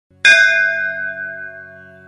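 A bell struck once about a quarter second in, ringing out and slowly fading, over a low steady drone.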